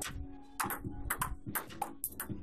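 Ping-pong ball in a fast rally, clicking sharply off the table and the paddles, several hits in quick succession.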